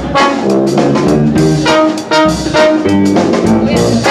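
Live jazz band: trombone and other brass playing held melody notes over a drum kit played with sticks.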